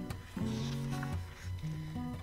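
Quiet background music in a pause between spoken lines: a simple acoustic guitar tune of held notes.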